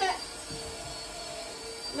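A spoken word at the start, then quiet room noise with a faint steady hum.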